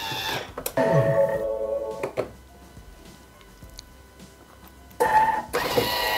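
Bimby TM6 (Thermomix) food processor's motor and blades running briefly at speed 7 to chop onion and chilli, a tonal whine that winds down and stops about two seconds in. Another loud tonal sound starts about five seconds in.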